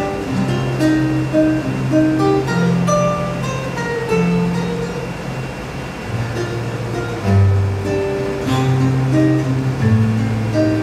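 Acoustic guitar playing an instrumental passage: short plucked melody notes over held bass notes.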